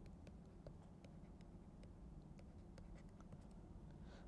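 Near silence with the faint ticks and scratches of a stylus writing on a tablet PC screen, over a low steady hum of room tone.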